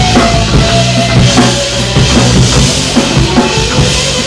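Rock band playing: electric guitar and bass guitar over a full drum kit, with a steady beat of kick drum and snare hits.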